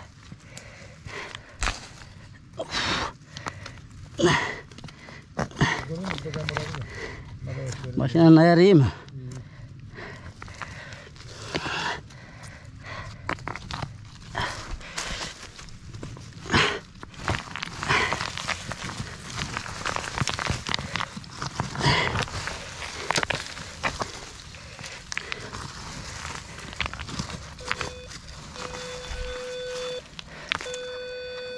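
Hands scraping and rummaging in soil and roots in a dug hole, with scattered clicks and knocks of stones, and a loud wavering voice-like sound about eight seconds in. Near the end a metal detector starts sounding short steady tones.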